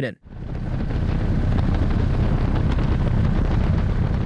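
Steady helicopter noise heard from on board: a low rotor and engine rumble with wind hiss, fading in over the first second.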